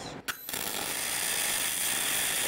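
MIG welding arc on aluminum plate, struck about half a second in and then burning with a steady, even hiss.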